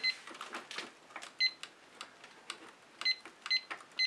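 Short, high electronic beeps, about five of them, come at uneven intervals. Among them are light knocks and clicks from a wet acrylic-pour canvas being handled and tilted.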